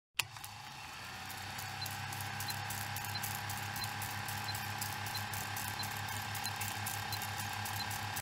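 Old film projector sound effect: a steady motor hum with a faint whine, constant crackle and a faint tick about every two-thirds of a second, starting with a click just after the start.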